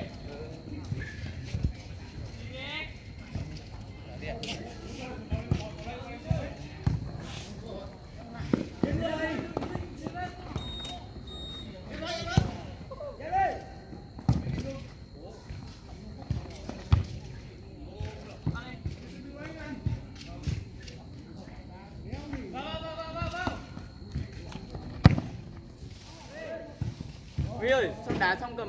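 A football being kicked on an artificial-turf pitch: sharp thuds every few seconds, the loudest near the end, among players' scattered shouts and calls.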